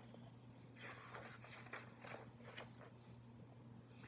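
Faint rustling of a paperback picture book's pages being handled and turned, a few soft scuffs over a low steady hum.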